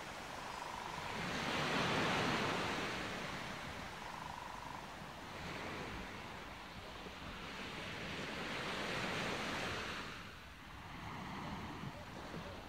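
Wind gusting over the camera microphone outdoors, swelling strongly about two seconds in and again around nine seconds, then easing off.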